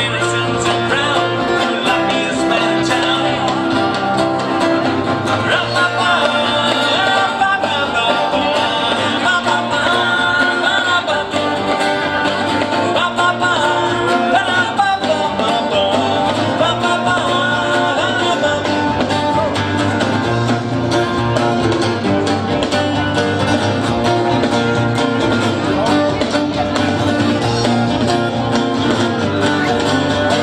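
Live folk-rock band playing: strummed acoustic guitar and a mandolin over electric bass and drums, going steadily throughout.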